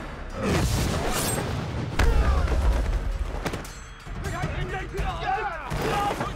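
Film fight sound effects over background music: a hit just under a second in, then a heavy booming impact with a sharp crack about two seconds in, and shouting voices near the end.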